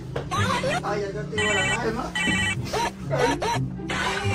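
Electronic ringing tone from a toy walkie-talkie, sounding in short bursts about a second and a half and two seconds in, over background music.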